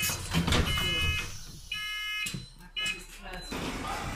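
Door warning bleeper of an Alexander Dennis Enviro400 double-decker bus on a Dennis Trident chassis, sounding while the doors are worked: a steady high beep in three bursts, the last one short.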